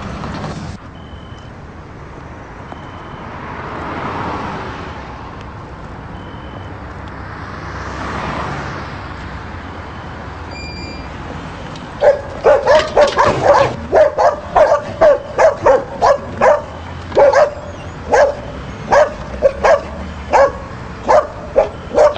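A dog barking over and over, about two barks a second, starting about halfway through. Before the barking, a rushing noise swells and fades twice.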